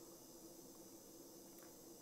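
Near silence with a faint steady hum from a nail e-file spinning a cuticle bit against the skin at the base of the nail.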